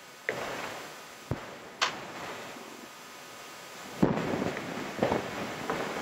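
About half a dozen sharp knocks and clicks from hands working at the lectern and its laptop, picked up close by the lectern microphone.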